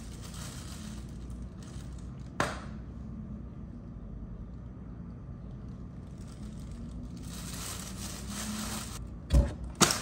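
Thin plastic bag rustling and crinkling around bread being eaten from it, loudest for a couple of seconds near the end. A sharp click comes a couple of seconds in, and two knocks come close together just before the end.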